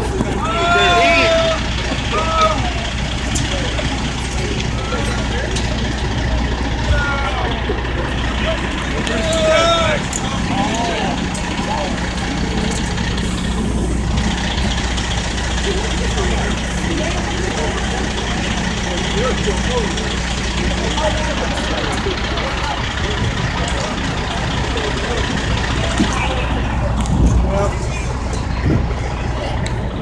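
A fire truck's diesel engine running steadily with a low hum, with people talking in the background, most clearly at the start and again about ten seconds in.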